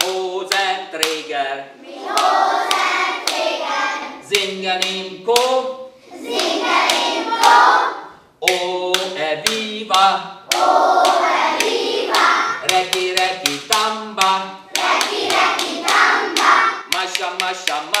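A group of young children singing a song together loudly. Their singing alternates with short sung lines from a man, in call and response. Sharp claps sound throughout.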